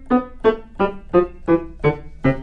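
C. Bechstein A208 grand piano: six short staccato notes in the lower-middle range, about three a second. Each is insanely crisp, dying almost at once as the dampers touch the strings, with no extra sustain or ringing.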